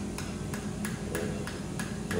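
A mallet striking a surgical osteotome (bone chisel) in light, evenly spaced taps, about three a second, chipping an olecranon bone spur loose in the elbow.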